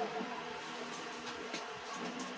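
Faint steady hum in a pause between speech, background room tone with no clear single source.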